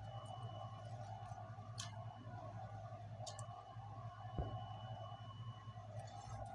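Low steady hum of room tone with a faint thin high whine in places, a couple of brief faint clicks and one soft thump about four seconds in.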